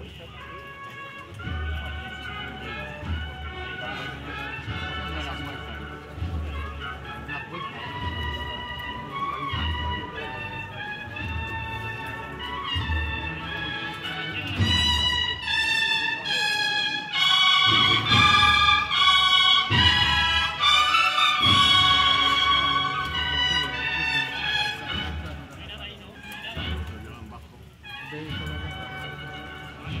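Banda de cornetas y tambores playing a processional march: bugles in several voices over a steady drum beat. The band swells loudest about halfway through, then drops back near the end.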